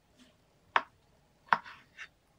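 Kitchen knife cutting kiwi fruit on a wooden cutting board: two sharp knocks of the blade on the board, under a second apart, with a few fainter taps.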